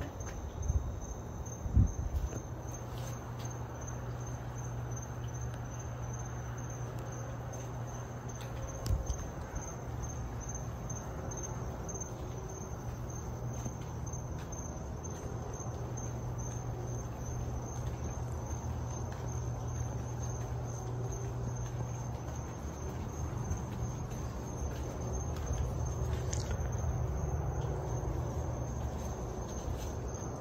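Hunter Key Biscayne ceiling fans running on medium speed, a steady low hum, under a steady high pulsing chirp of crickets. A couple of knocks come in the first two seconds and another about nine seconds in.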